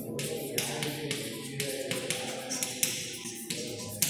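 Chalk tapping and scratching on a blackboard as a number is written, in a quick series of short strokes.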